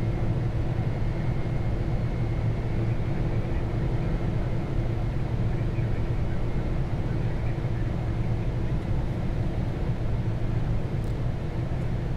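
Flight-deck noise of a Boeing 747 in the climb: a steady rush of air and engine noise with an even low hum, unchanging throughout.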